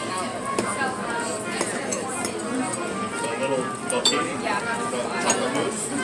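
Restaurant dining-room sound: background voices and piped music with a saxophone, and cutlery clinking against plates now and then.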